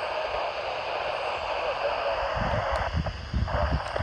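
Steady hiss from a Yaesu FT-470 handheld FM receiver's speaker, the open channel listening to a satellite downlink between calls. Low uneven rumbling joins it in the second half.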